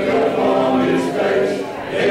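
A church congregation singing a hymn together, many voices holding long notes, with a short dip in loudness near the end.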